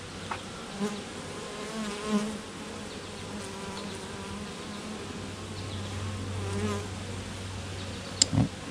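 Honey bees buzzing around an opened hive: a steady low hum from the colony, with single bees flying close past the microphone in wavering, rising and falling tones. The colony is defensive, a little jumpier than the beekeeper would like, and bees keep flying at his hands.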